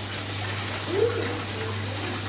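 Water pouring from a spillway into a koi pond, a steady splashing rush, over a steady low hum.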